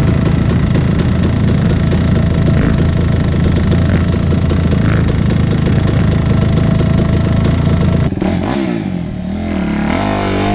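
KTM 250 dirt bike engine running at a steady, even speed, then, after an abrupt cut about eight seconds in, a Suzuki RM-Z 250 motocross engine revving up and down as the bike rides.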